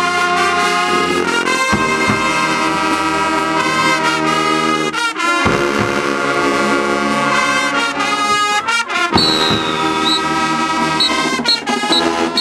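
Marching band brass section of trumpets, trombones, saxophones and sousaphones playing loud held chords, with short breaks between phrases about two, five and nine seconds in.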